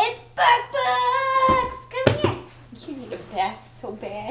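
A woman's voice in a drawn-out, sing-song call with no clear words, holding one long high note about a second in. A few short knocks come from the cardboard box being handled, the loudest about two seconds in.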